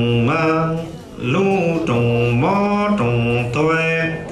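A man's voice chanting a Hmong txiv xaiv funeral song in long held notes that slide from pitch to pitch. The phrase breaks briefly about a second in and again near the end.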